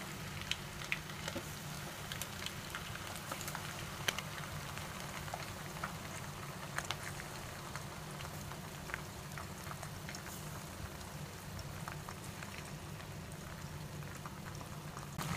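Marinated chicken lollipops deep-frying in hot sunflower oil: a faint, steady sizzle with scattered small crackles and pops.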